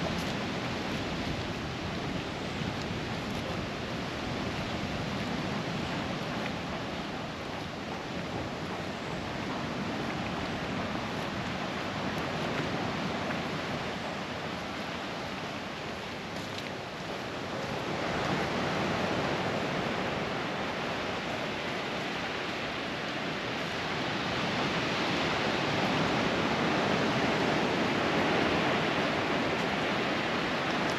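Steady rush of sea surf on the shore. It grows louder a little over halfway through and again in the last few seconds.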